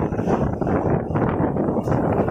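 Moving passenger train heard from an open coach window: a steady rumble of wheels on the rails, with wind buffeting the microphone.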